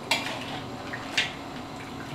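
A metal spatula knocking and scraping in a wok as cooked crabs are scooped out, with two sharp clinks: one at the start and a brighter one just after a second in.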